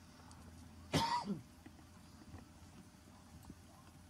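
A person coughing once, sharply, about a second in, in an otherwise hushed room.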